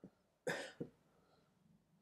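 A man's short cough about half a second in, followed at once by a smaller second one.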